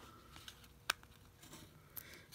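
Faint handling sounds of the paper backing being peeled off a foam adhesive strip, with a single sharp click about halfway through.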